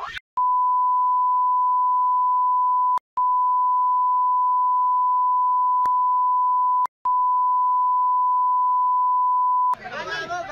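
A censor bleep: one steady, high, pure beep tone laid over the audio of a heated argument, blanking out the abusive words. It runs in three long stretches, broken by two brief gaps about three and seven seconds in.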